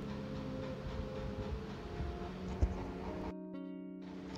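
Soft background music with held notes and a plucked guitar-like instrument, with one faint tap about two and a half seconds in.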